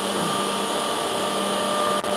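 Steady mechanical hum of a running edge banding machine, an even whir with a few constant tones and no knocks or changes.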